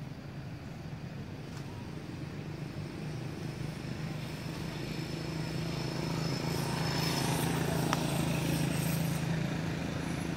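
A motor engine runs with a steady low hum. It grows louder over several seconds as if coming closer, then eases just before the end. There is a brief click about eight seconds in.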